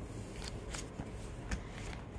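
Faint rustling of printed book pages being handled, with a few soft paper clicks.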